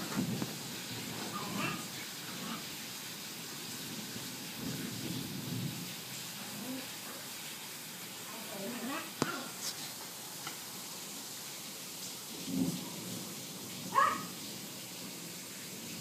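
Steady hiss of rain during a night storm, with faint low voices murmuring now and then, a sharp click about nine seconds in and a short rising whine near the end.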